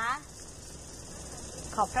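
Insects chirring steadily and faintly, a thin high-pitched sound under a pause in speech.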